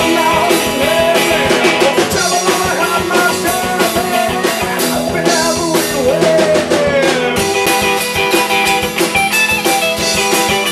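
Live rock band playing: a male singer with acoustic guitar, an electric guitar and drums. The singing stops about seven seconds in, and the guitars and drums carry on.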